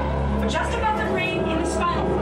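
Motion-simulator ride soundtrack through the cabin speakers: indistinct voices over music and a steady deep rumble.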